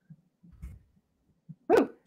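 A person's short, loud 'ooh' exclamation near the end, at a botched text edit, after faint low thumps.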